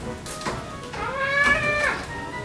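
A single meow-like call, about a second long, starting about a second in; its pitch rises, holds and then drops. Background music plays underneath.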